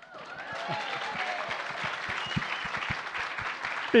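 Audience applauding, with some laughter, building up in the first half second and then holding steady.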